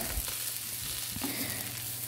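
Potato masala sizzling steadily in a nonstick pan while a wooden spatula stirs it.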